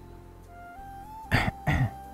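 Soft background music, a slow melody of held notes, with a person clearing their throat twice in quick succession a little past halfway.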